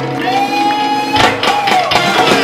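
Live band music with the singer holding one long note that bends down at its end, over a cheering crowd; the bass drops back in the first second and sharp percussion strokes come in about a second in.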